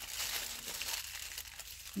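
Clear plastic packaging bags crinkling as they are handled, a crackle that thins out toward the end.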